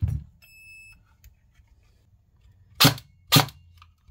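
A VFC MP7 airsoft electric gun (AEG) fired twice, two short sharp shots about half a second apart near the end, after a click and a brief electronic beep from the battery being plugged in. The gun is jammed, with a BB stuck in the chamber.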